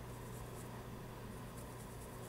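Faint, light scratching and rubbing in several short strokes, as of small objects being handled, over a steady low electrical hum.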